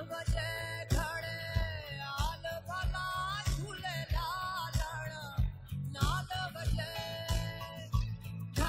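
A recorded band song playing: a singer's voice gliding over guitar and bass, with a steady drum beat.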